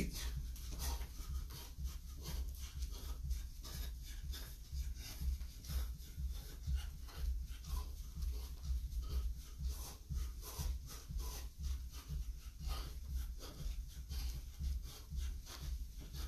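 Quick, regular footfalls on carpet and hard breathing from a person doing a fast-feet exercise drill, about four beats a second, over a low steady hum.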